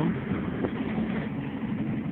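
Steady road and engine noise of a moving car, heard from inside the cabin with a side window down.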